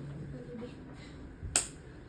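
A single short, sharp click or snap about a second and a half in, over faint room tone.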